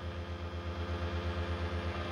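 Joola TT Buddy J300 table tennis robot's motors running: a steady hum with a rapid low pulsing, about ten beats a second.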